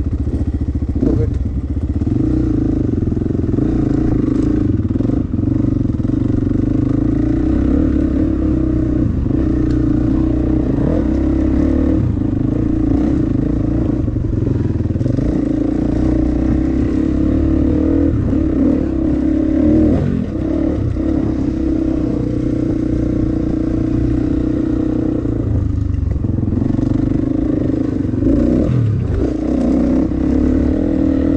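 Dirt bike engine running while riding a trail, its revs rising and falling with the throttle. It drops off briefly twice, about two-thirds of the way through and again a few seconds later, before picking back up.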